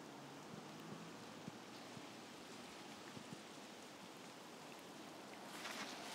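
Faint steady hiss of light rain on wet ground. About five and a half seconds in, a louder crackling wash comes up as a car rolls in on the wet tarmac.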